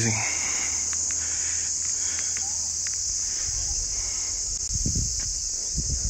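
A steady, high-pitched shrill chorus of insects carrying on without a break, with some low rumbling in the second half.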